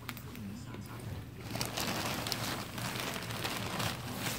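Thin plastic bag crinkling and rustling as a pig shifts around inside it: a dense patter of small crackles that grows louder about a second and a half in.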